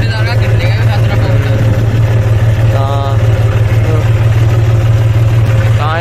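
John Deere tractor's diesel engine running steadily as the tractor drives, heard from the driver's seat as a loud, even low drone.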